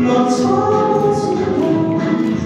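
Live singing of a song in concert, with voices holding long sung notes.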